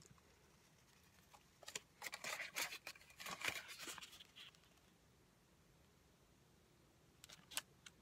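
Crinkling and rustling of a pipe tobacco tin's gold foil inner wrap being unfolded by hand, in a crackly stretch of about three seconds starting about two seconds in, with a few short clicks near the end.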